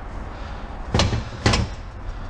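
Two short clunks about half a second apart as a lever-operated press tool is worked down to push an apply piston into an automatic transmission's input clutch drum.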